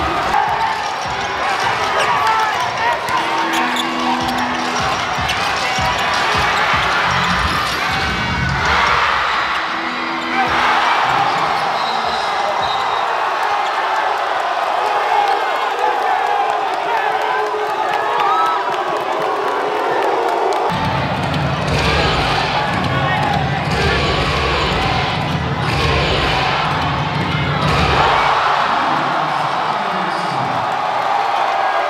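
Basketball arena sound: a crowd shouting and cheering, and a basketball bouncing on the hardwood court. About twenty seconds in, a heavy pulsing low beat comes in under the crowd.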